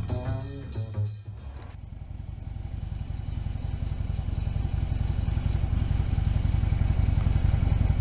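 A short stretch of music that ends about two seconds in, then a Harley-Davidson touring motorcycle's V-twin engine idling with a steady low pulse that grows gradually louder.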